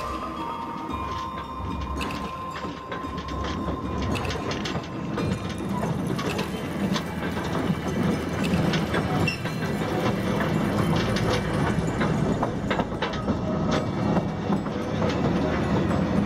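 Small mine car rolling along narrow-gauge rails, a continuous rattling clatter with many sharp clicks, growing louder about six seconds in. The tail of background music fades out in the first two seconds.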